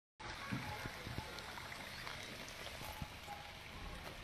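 Wine from burst distillery storage tanks running down a street gutter: a steady watery rush with faint small splashes.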